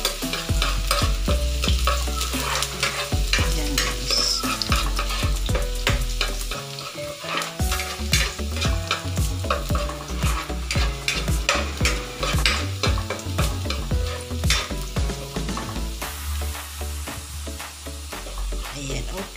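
Minced garlic sizzling in oil in a nonstick wok, with a spatula scraping and knocking against the pan as it is stirred.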